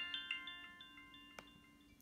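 Phone ringtone for an unanswered incoming call: a run of bright, chime-like notes that fade away towards the end, with a faint click about one and a half seconds in.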